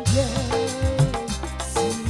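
Live dangdut music: a woman singing into a microphone, sliding up into one long held note, over a band with regular drum strokes.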